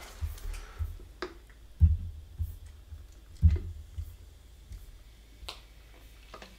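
A few scattered sharp clicks and light knocks, about four over the stretch, the loudest about three and a half seconds in, some with a soft low thump: handling noise from gear being moved about.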